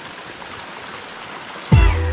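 Steady rushing outdoor noise, then electronic background music with heavy bass cuts in suddenly near the end and becomes the loudest sound.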